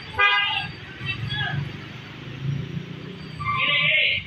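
Street traffic rumbling, with a vehicle horn sounding near the end.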